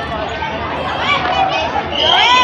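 Several children's voices chattering at once, no single speaker clear.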